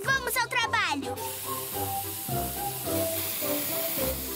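Hissing of cartoon paint sprayers, starting about a second in under background music. A short voice is heard just before the hiss begins.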